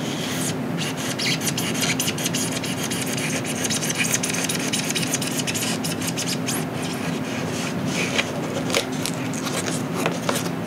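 Hobby knife blade cutting and scraping through the balsa sheeting and foam core of a model airplane wing, a quick run of short scratchy strokes.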